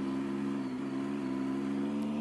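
Triumph Tiger motorcycle engine running at steady revs while riding, a constant even hum with no rise or fall in pitch.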